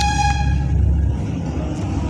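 A single high-pitched horn toot lasting under a second, fading out early, over a low steady rumble.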